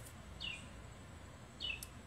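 Faint bird calls: two short chirps, each falling in pitch, a little over a second apart.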